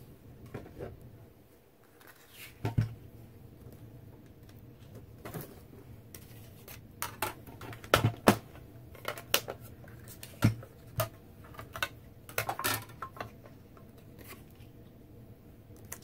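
Clear acrylic cutting plates, a metal die and a small die-cutting machine being handled and set in place: scattered sharp plastic clicks and knocks, the loudest about eight seconds in.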